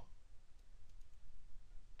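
A few faint clicks from the pointing device being used to write on a digital whiteboard, over a low steady room hum.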